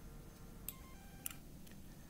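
Quiet room tone broken by two soft clicks about half a second apart, a little under and a little over a second in, followed by a fainter tick: computer mouse clicks.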